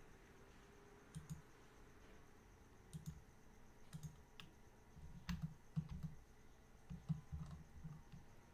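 Faint, scattered clicks of a computer mouse's buttons and scroll wheel, a dozen or so at irregular intervals, some in quick pairs.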